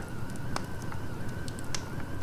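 A low background hum and hiss with a thin, slightly wavering high whine held steady, and a couple of faint clicks, in a pause between spoken lines.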